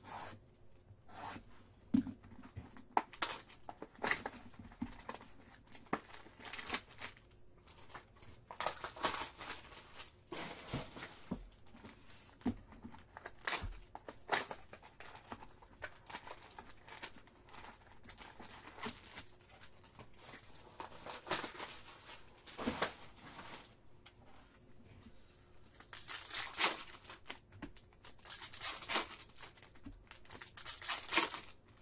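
A trading-card hobby box being opened by hand: a utility knife slitting the plastic shrink wrap, then the cardboard flaps torn open and the foil packs handled. Tearing and crinkling with scattered sharp clicks, loudest near the end.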